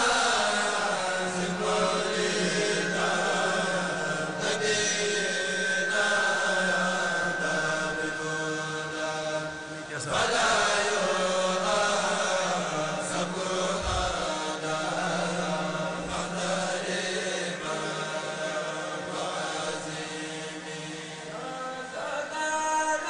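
Group of men chanting a Mouride religious poem (khassaïde) together through microphones and a PA, in long drawn-out melodic lines; a new phrase starts about ten seconds in.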